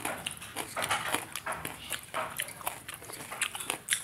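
Close-miked wet chewing and mouth sounds of rice in thin ridge gourd curry, eaten by hand, heard as many irregular short wet clicks and smacks. Also the squelch of fingers mixing the rice on a steel plate.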